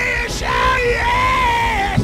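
Preacher's voice in a high, sung cry, holding long notes that slide in pitch, over a low steady music backing.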